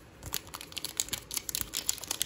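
Plastic wrapper of a Panini Prizm basketball-card bonus pack crinkling as it is handled and torn open: an irregular run of small, sharp crackles.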